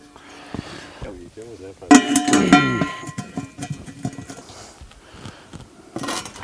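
Cast-iron camp oven being set down over campfire coals: a sharp metal clank about two seconds in, followed by a ringing that dies away within about a second.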